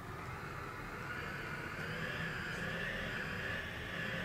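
Computer-synthesised sonification of a mass-spring oscillator, driven by hand movement and played through a speaker: a noise-like sound, mostly in the upper middle range, that swells over the first two seconds and then holds steady. The swell is the oscillator building up as the movement is brought into phase with it.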